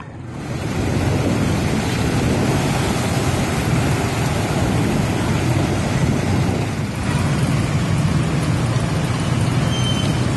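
Traffic on a flooded street: motorbike, tuk-tuk and truck engines running under a steady, noisy wash, with a brief dip about seven seconds in.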